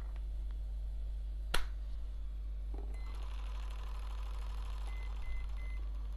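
A single sharp click, then from about halfway a steady electric buzz with a few short high beeps, all over a low steady hum.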